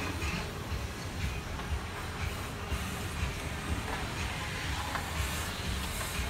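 Steady low rumble and hiss of a large dining room's background noise aboard a cruise ship, with a few faint clinks.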